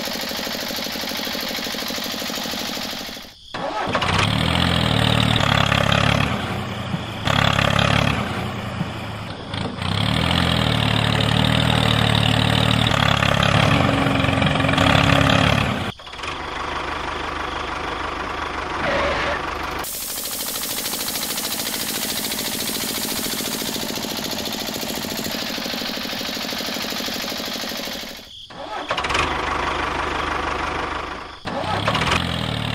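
A vehicle engine running, in several segments broken by brief drop-outs. It is loudest and deepest from about four to sixteen seconds in, and runs more steadily and evenly after that.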